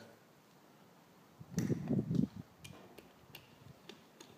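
Metal tools and engine parts being handled on a workbench: a short clatter about halfway through, then a few sharp metallic clinks.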